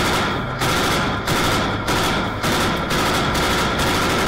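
Vehicle-mounted heavy machine gun firing a sustained string of loud shots, about one or two a second.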